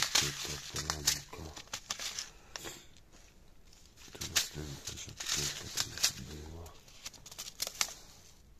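Seed packets rustling and crinkling as they are picked up, flipped and shuffled in the hand, with short bursts of a man's speech in between.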